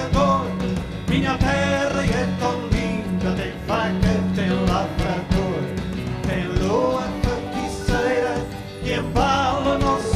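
Live band playing a folk-rock song: guitars, bass and drums with a steady beat under a melody line.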